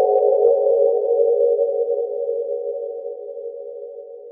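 Electronic music: a held synthesizer chord, a few steady notes, fading out steadily as the track ends.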